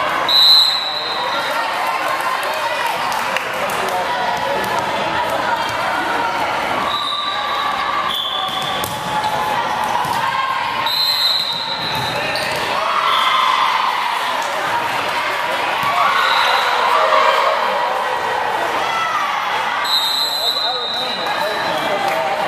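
Sports-hall din during a volleyball match: a short, high referee's whistle blast about half a second in, followed by several more short whistles from the courts. Under them, volleyballs are being struck and bouncing, and a steady murmur of many voices echoes through the large hall.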